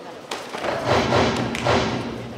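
Thuds of kicks or strikes landing on taekwondo body protectors during a sparring exchange, with two sharp hits about a second and a quarter apart. Around the hits there is a louder swell of arena sound that includes a steady low tone.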